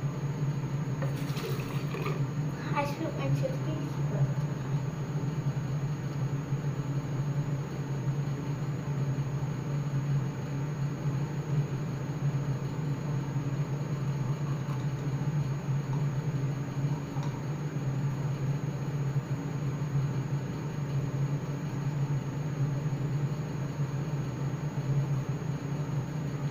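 Teeth being brushed with a manual toothbrush, with a few short knocks and handling sounds in the first seconds, over a steady low hum.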